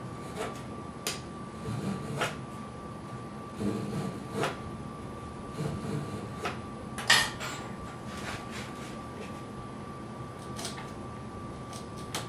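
Small razor saw cutting a notch in the end of a wooden brace on a guitar back, heard as scattered light scrapes and clicks at irregular spacing, the loudest about seven seconds in.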